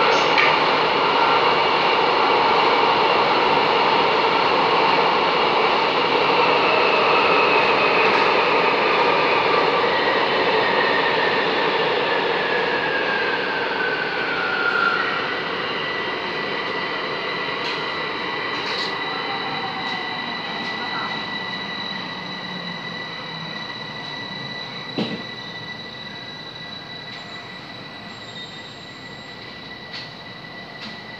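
Bucharest metro M5 train decelerating into a station and stopping: the running noise of wheels and traction gear fades as it slows, with a whine that falls in pitch until about halfway through. After that a steady high-pitched tone remains, with a single click near the end.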